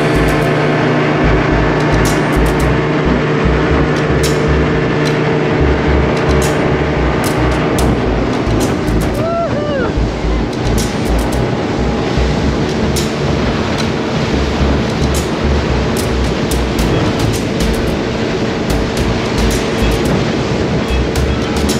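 Outboard-powered speedboat running at speed: a steady engine drone under rushing water and spray off the hull, with wind buffeting the microphone. About nine seconds in, a short rising-and-falling cry of a voice.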